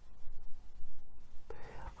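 A pause in a man's quiet, close-miked talk: a steady low hum with a few faint clicks, then his soft voice comes in near the end.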